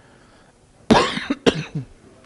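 A person coughing about a second in, a sharp burst followed by a shorter second one.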